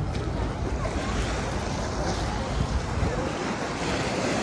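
Small lake waves washing onto a sandy shore, with wind buffeting the phone's microphone as a steady low rumble. Distant beachgoers' voices can be heard faintly.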